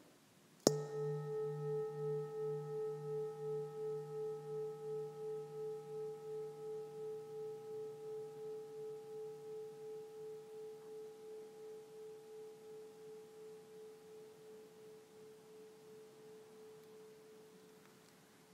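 A meditation bell struck once, about a second in. It rings with a pulsing waver about twice a second and slowly dies away over some seventeen seconds.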